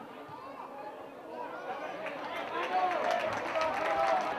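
Untranscribed shouting voices of players and spectators at an open-air football match, growing louder in the last two seconds with a scatter of sharp clicks.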